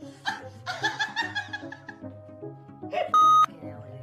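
Background music with a steady bass line, over which a person laughs in the first couple of seconds. About three seconds in, a loud, steady censor bleep blots out a swear word for about half a second.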